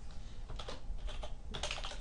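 Computer keyboard typing: a few scattered keystrokes, then a quick run of them near the end.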